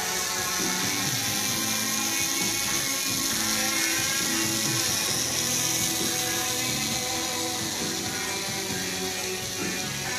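Tattoo machine buzzing steadily as it runs needles along the tattoo's lines. Music plays in the background.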